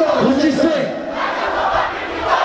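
Concert crowd shouting and chanting loudly, many voices at once.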